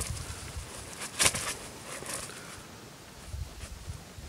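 Handling noise of a small fabric pouch on a paracord line as a rock is worked into it: soft rustling, with one short, sharp rustle about a second in.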